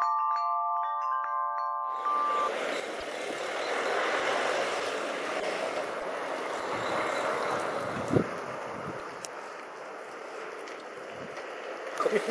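Bright chiming, glockenspiel-like intro music that ends after about two seconds. A steady, even rush of outdoor street noise follows, with a single short thud about eight seconds in.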